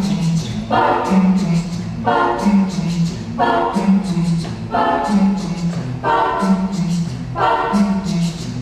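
Mixed a cappella vocal ensemble, men and women, singing a porro-jazz arrangement with no instruments: a low bass line steps between notes while the upper voices re-attack a chord about once a second in a steady repeating rhythm.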